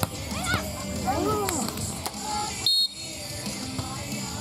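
Players and spectators shouting and cheering around a beach volleyball court, with voices calling out in rising and falling tones. About three seconds in, a short, loud, high-pitched referee's whistle blast sounds as the rally ends and play resets.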